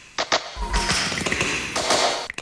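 Sound effects of a SEAT car-brand TV logo ident: two quick sharp taps, then a low thud with a rushing noise that lasts about a second and a half.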